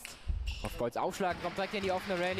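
A table tennis ball struck by the bats and bouncing on the table during a rally: a few sharp clicks in the first second, ending the point.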